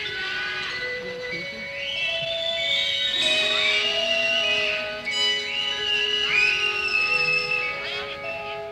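Live rock band recording playing a slow instrumental passage: long held notes underneath a high lead line that bends and slides in pitch.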